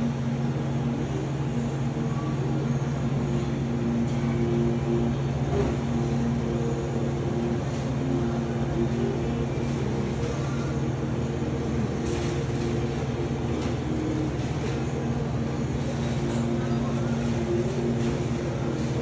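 Steady low machine hum of a shop's refrigerated display cases, with a few faint clicks.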